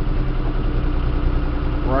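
John Deere 5320 utility tractor's diesel engine idling steadily, heard from inside the closed cab.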